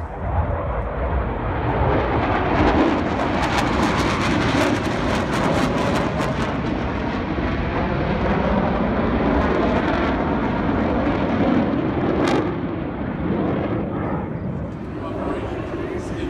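Blue Angels F/A-18 Hornet jets passing overhead: a jet roar that builds over the first couple of seconds and stays loud and crackling through the middle. There is one sharp crack about twelve seconds in, after which the roar fades away.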